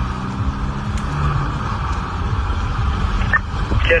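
Patrol car driving, heard from inside the cabin: a steady engine hum and road noise.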